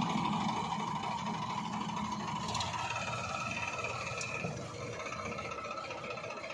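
Diesel tractor engines running steadily, the Farmtrac 60 and the Mahindra Arjun 555, with a thin high whine joining for about two seconds in the middle.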